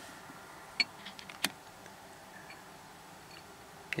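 Two light clicks, about half a second apart around a second in, over faint steady hiss: a piece of rough opal handled between the fingertips.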